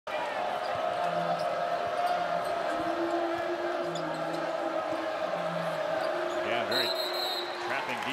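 Basketball game sounds in an arena: a ball dribbling and sneakers squeaking on the hardwood over a steady hum. Near the end a referee's whistle sounds once, briefly, stopping play for a timeout.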